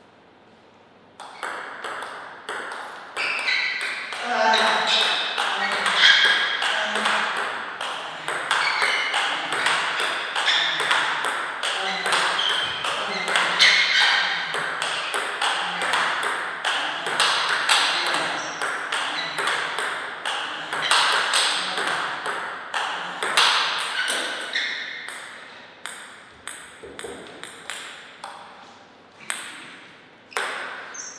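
Table tennis ball clicking rapidly off the bats and table in a fast rally, starting about a second in, with voices talking underneath.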